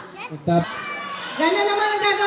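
Children's voices: a group of kids calling out together in high, drawn-out voices, with a brief lower voice before them.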